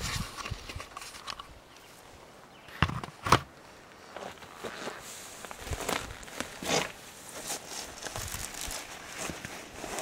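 A person scrambling through dry brush and leaf litter: irregular footsteps, rustling and crackling of dry plants, with two sharp knocks about three seconds in.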